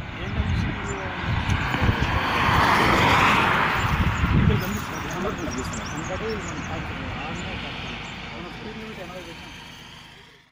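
A vehicle passes on the highway, its noise swelling to a peak about three seconds in and then fading slowly away. Wind rumbles on the microphone, and men talk faintly.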